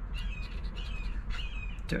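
Birds calling outdoors: a quick run of short, high, slightly falling squawks, several a second. Under them, the faint scratching of a coin across a scratch-off lottery ticket.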